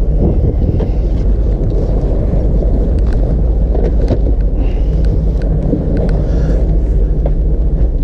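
Motorboat underway: a steady low engine rumble mixed with loud wind buffeting on the microphone, with a few sharp knocks.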